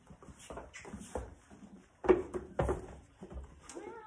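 A horse's hooves stepping on a barn aisle floor as it walks: irregular thuds and knocks, the loudest about two seconds in.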